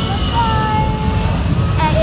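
Jet airliner's engines at takeoff power as it begins its takeoff roll: a steady low rumble, with voices over it.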